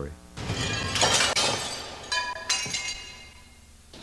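Glass shattering, a loud crash of breaking glass about a second in, followed by briefly ringing, clinking pieces that fade out over the next two seconds.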